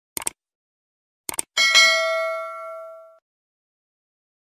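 Subscribe-button animation sound effect: quick mouse clicks just after the start and again about a second later, then a bright notification-bell ding that rings out for about a second and a half.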